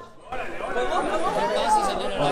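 Overlapping chatter of several people talking at once, starting after a brief lull at the very beginning.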